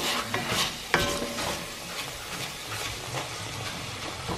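Ground Italian sausage and bacon sizzling as they brown in an enamelled Dutch oven, stirred and scraped with a wooden spoon. A sharp knock with a short ring comes about a second in.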